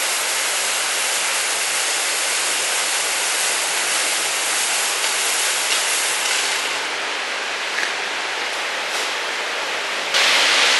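Steady hiss of blown air carrying test smoke out from under a race car's nose during a smoke test.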